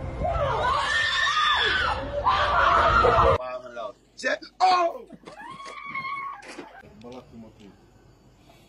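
People screaming in fright: a long, loud, high scream for about three seconds that cuts off abruptly, followed by shorter cries and shouts.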